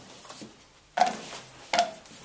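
Two sharp knocks against a stainless saucepan, about a second in and again near the end, each with a short ringing tail, as pieces of white chocolate are dropped into the hot cream.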